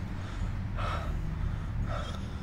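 A man gasping for breath in pain, heavy breaths about once a second over a steady low rumble.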